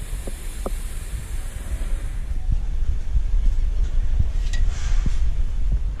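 Wind buffeting the camera's microphone: a steady low rumble that gets somewhat louder about halfway through.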